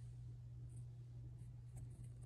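Quiet, steady low hum of room tone in a small room, with a few faint, brief ticks.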